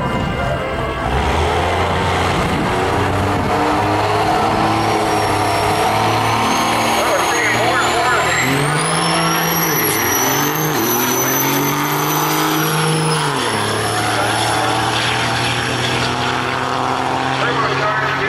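Cummins 5.9 24-valve inline-six diesel in a Dodge Ram pickup, VP44-pumped with a single turbo, launching hard about a second in and running at full throttle down the quarter mile, with a high turbo whine above the engine. The engine note dips and climbs again a few times, as at gear changes, then drops at about 13 s as it lifts off.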